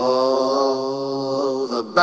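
A single long chanted vocal note, held steady with the bass and drums dropped out, in an AI-generated reggae song. It stops just before the end.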